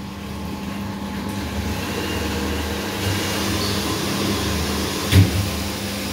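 Water pouring from the filling nozzle of an automatic 20-litre bottle-filling machine into a bottle, a steady rushing over a constant low machine hum. A single short thump comes near the end.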